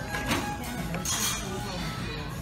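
Restaurant dining-room background: indistinct voices and background music, with a light clink of dishes or cutlery about a second in.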